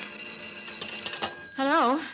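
Telephone bell ringing, a radio-drama sound effect, as the organ music bridge dies away; the ringing stops and a woman's voice answers the call near the end.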